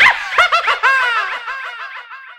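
High-pitched laughter dropped in as a comic sound effect: a quick run of falling 'ha-ha' notes, far higher than an adult voice, that starts suddenly and fades away.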